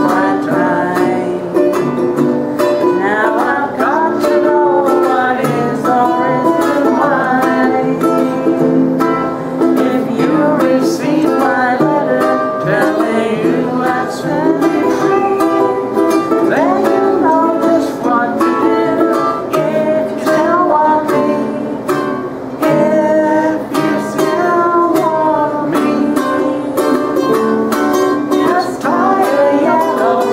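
Several voices singing an old-time song together, accompanied by a strummed acoustic guitar and ukulele.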